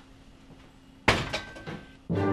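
A door shutting about a second in: one sharp knock with a short ringing tail, followed by a couple of lighter knocks.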